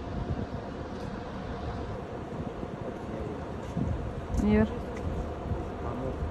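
Steady low rumble of a moving vehicle heard from inside, with a short voice sound about four and a half seconds in.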